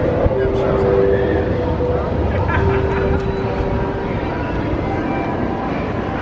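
Amusement-park ambience at a running WindSeeker swing ride: a dense wash of crowd voices over a steady mechanical hum, with a few held tones that come and go.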